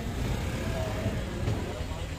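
Steady low rumble of road traffic with faint voices talking in the background.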